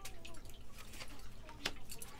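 A tarot card being drawn and laid down on the table, quiet handling with a single light tap about a second and a half in.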